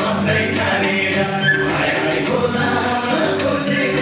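A man singing a Nepali folk song into a microphone over amplified backing music with a steady beat.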